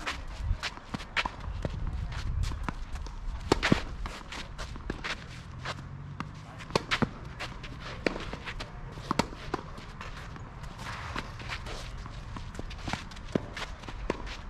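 Tennis players' footsteps scuffing and sliding on a clay court, with the sharp knocks of a tennis ball being struck by rackets and bouncing during a rally. A low rumble sits underneath in the first few seconds.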